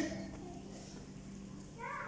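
A faint, steady low hum: a single held tone under quiet room tone.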